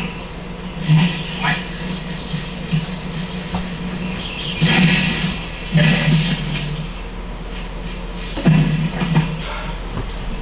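Television audio: indistinct voices and sounds in short bursts, over a steady low hum.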